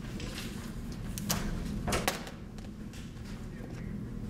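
Office room tone: a steady low hum with a few light clicks and knocks, one about a second in and a couple around two seconds in.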